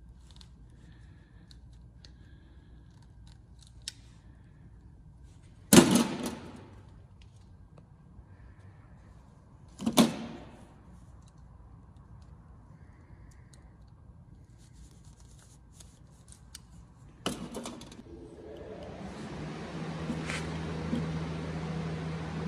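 A hand crimping tool and butt connectors handled with small clicks, and three sharp metallic clacks with a brief ring. Near the end a gas-fired shop heater kicks on: a rising, steady rush of air with a low hum.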